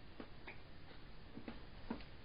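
Faint, irregular clicks of TV remote control buttons being pressed, about five in two seconds, the last the loudest.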